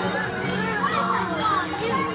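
A crowd of young children chattering and calling out all at once, their many voices overlapping in a busy, steady hubbub, with music underneath.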